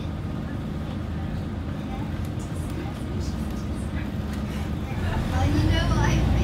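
Scania OmniCity single-deck bus's diesel engine idling, heard from inside the passenger cabin, then getting louder about five seconds in as the bus pulls away from the stop under load.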